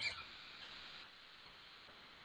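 Faint room tone on a lecturer's microphone, with the brief hissy tail of a spoken word at the very start.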